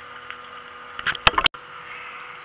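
Handling noise on the recording device: a few sharp clicks and knocks a little after a second in, ending in an abrupt cut in the recording, over a steady background hum.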